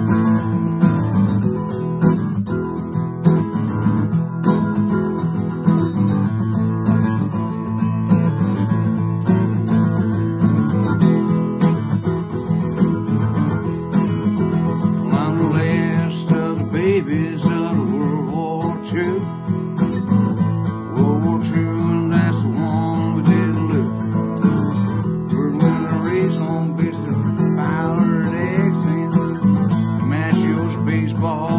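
Steel-string acoustic guitar strummed alone in a country song intro, then a man's voice comes in singing along about halfway through.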